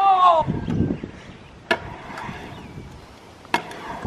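Stunt scooter wheels rolling on a concrete skate bowl, with two sharp clacks of the scooter hitting the concrete, one just under two seconds in and one about three and a half seconds in. A voice shouts at the very start.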